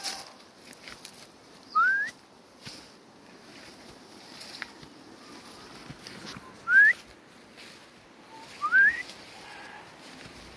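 Three short whistled notes, each sliding quickly upward, about two seconds in, near seven seconds and near nine seconds. Between them are faint footsteps on a grassy path.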